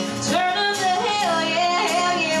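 Two women singing a country song live over an acoustic guitar.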